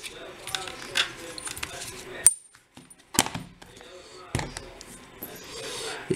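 Small metal lock parts and tools being picked up and handled, clinking and clicking a handful of separate times, the sharpest click about two seconds in: a brass lock cylinder and a metal follower tube.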